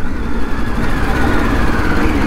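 Triumph Street Triple three-cylinder engine running on its stock exhaust at low speed in traffic, under steady road and wind noise.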